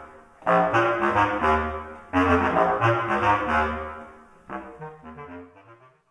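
Two bass clarinets playing punchy, repeated notes low in their range: two loud phrases that each die away, then softer notes fading out as the piece ends.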